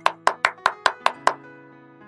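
A rapid run of sharp ticks, about five a second, over soft sustained background music; the ticks stop a little past halfway and the music carries on. This is a quiz-timer ticking sound effect marking time to think of the answer.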